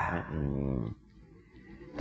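A man's voice holding a low, drawn-out vocal sound for about a second, quieter than his speech, then quiet room tone.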